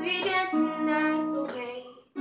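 A young girl singing, accompanied by her own strummed acoustic guitar, holding long notes that die away near the end.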